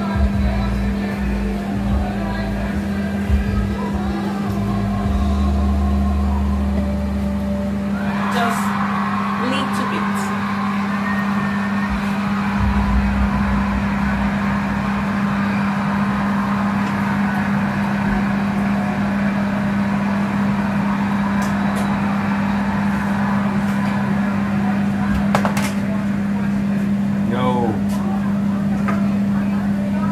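Steady hum of a kitchen cooker-hood extractor fan, with background music over the first several seconds. After about eight seconds the music stops and a broader kitchen hiss carries on under the hum, with a few light clicks.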